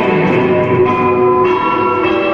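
Loud recorded dance music playing steadily, with sustained bell-like tones in the mix.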